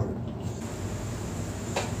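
Steady room noise: an even hiss with a low hum, joined about half a second in by a faint, thin high-pitched whine.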